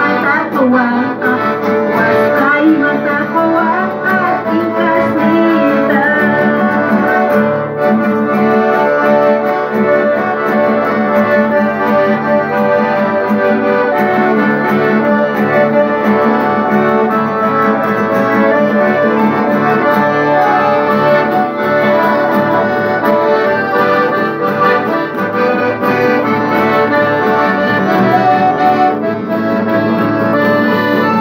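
Hohner piano accordion playing a hymn melody over sustained chords, steady throughout.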